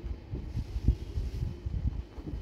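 Soft, irregular low thuds and bumps as a cloth garment is handled and laid out on a wooden table, with one stronger bump about a second in.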